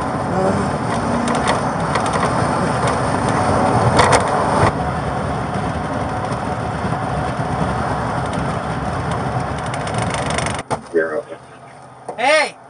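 Steady road and engine noise heard from inside a moving police patrol car, with a brief louder noise about four seconds in. The noise drops away sharply shortly before the end.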